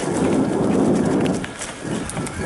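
Mountain bike, a Giant Trance, rolling fast over a dirt trail strewn with dry leaves: tyres crunching through leaves and over the ground, with steady clatter and rattle from the bike carried to the bike-mounted camera. It eases off a little about a second and a half in.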